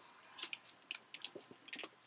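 Faint, irregular crackles and clicks of packaging being handled while a Sweet Spot baseball card box, hard to get open, is worked at.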